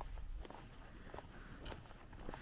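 Faint footsteps of a walker on a paved country road, a few soft steps about half a second apart over a low background rumble.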